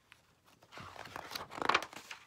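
Pages of a picture book being turned by hand: paper rustling and flapping, starting just under a second in and loudest near the end.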